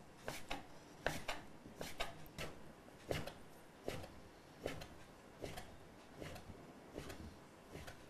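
Kitchen knife cutting a rolled-up sheet of fresh pasta dough into very thin strands: quick, even strokes, each a soft knock of the blade on the board, about one or two a second, some in quick pairs.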